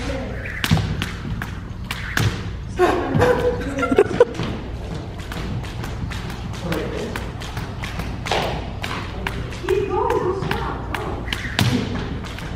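Jump rope slapping a wooden gym floor as feet land on each turn, a steady run of light thuds about two or three a second.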